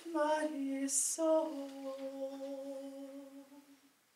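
A woman's solo voice singing a cappella, closing the song on a long held low note that fades away shortly before the end.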